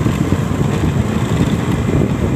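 Motorcycle running as it rides along a road: a steady low rumble.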